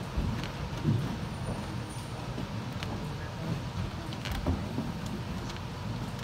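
Live auditorium room noise: a steady low rumble with faint audience murmur and scattered small clicks and knocks, one louder knock about four and a half seconds in.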